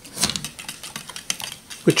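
A quick, irregular run of light plastic clicks and rattles from a toy plastic pinwheel windmill being handled as its blades spin.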